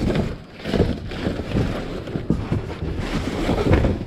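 Cardboard boxes being handled and shifted in a metal dumpster: irregular rustling and scraping of cardboard with light knocks.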